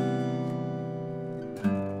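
Martin 00-28VS 12-fret acoustic guitar played by hand: chords ring and slowly fade, then fresh notes are plucked about a second and a half in.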